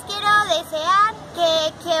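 A 14-year-old girl speaking Spanish, her words drawn out with a gliding, sing-song rise and fall in pitch.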